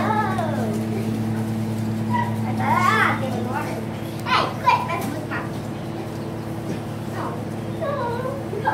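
Young children's voices in play: a few short squeals and calls near the start and around three and four and a half seconds in, over a steady low hum.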